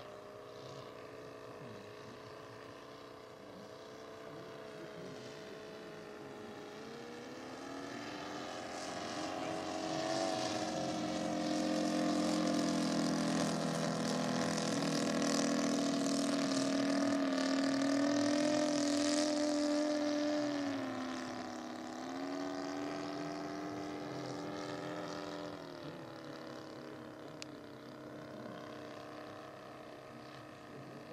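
Engine and propeller of a radio-controlled Udet Flamingo scale biplane in flight, a steady droning note. The pitch steps up about a quarter of the way in, drops back about two-thirds through, and dips again near the end as the throttle changes. It grows louder through the middle as the plane passes closest.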